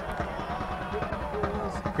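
Low background noise of a football ground heard through a commentator's microphone, with a faint distant voice about halfway through.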